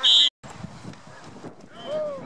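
A short, loud blast of a referee's whistle, cut off abruptly about a third of a second in, followed by outdoor field noise and a single shout near the end.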